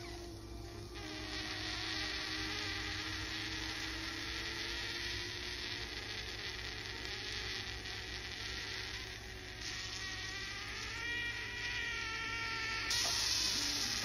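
Electric vertical egg cooker cooking an overfilled egg: a steady hiss under a faint constant whine. From about ten seconds in, a high squealing whistle rises in pitch, and the hiss grows louder near the end.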